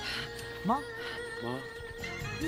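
Drama background music with long held notes, broken a little before one second in by a loud, sharply rising surprised vocal exclamation, and by a shorter rising call near the end.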